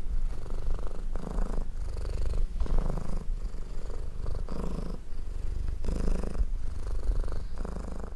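Domestic cat purring close up: a steady low rumble that swells and fades in slow, repeated cycles with each breath in and out.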